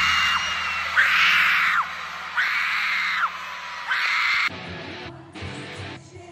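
Live concert music with the crowd screaming in four loud bursts, about a second and a half apart. The sound drops suddenly to quieter music about three-quarters of the way through.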